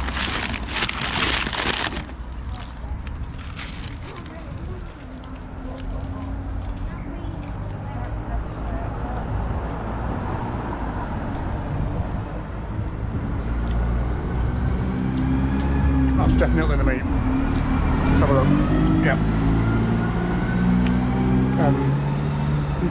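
A paper bag crinkles sharply for the first couple of seconds. Then comes steady low street rumble, with a vehicle engine's pitched drone rising and falling in the second half.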